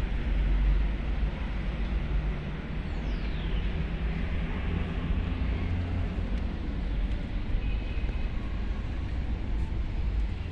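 Low, steady background rumble with no speech, and a faint falling tone about three seconds in.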